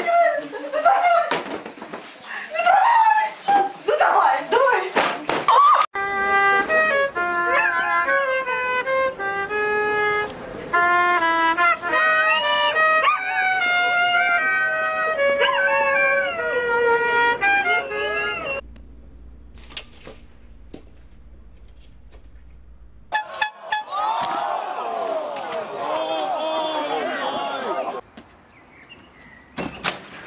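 A string of short unrelated clips: first excited voices and laughter, then about twelve seconds of a tune of clear, held notes, then a few seconds of low hum, then a wavering voice-like sound for several seconds.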